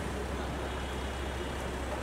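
Range Rover engine idling: a steady low hum at an even level.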